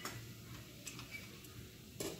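Faint, scattered ticks from whole spices (bay leaves, cardamom) starting to crackle in ghee and oil in an aluminium pressure cooker, over a low steady hum.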